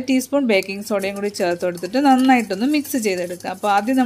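Speech: a woman talking without a break.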